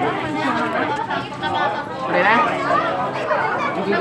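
People talking in overlapping chatter, with no clear words.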